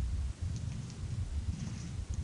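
Low, uneven room rumble with a few faint, light clicks of a computer mouse.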